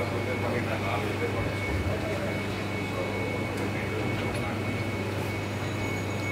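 Steady electrical hum of kitchen equipment with a constant high whine above it, and faint voices in the background.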